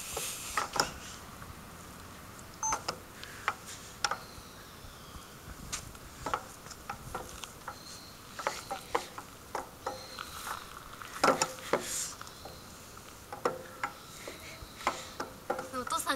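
Metal playground swing in motion: its chains and hangers clink and creak in short, irregular clicks with the odd brief squeak.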